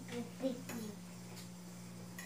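A few short, faint murmured voice sounds in the first second, then a quiet room with a steady low hum and a faint click or two of cutlery against a plate.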